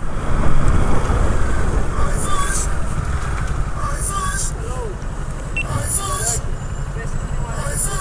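Motorcycle engine running under way in city traffic, with a continuous low rumble, before easing to a stop.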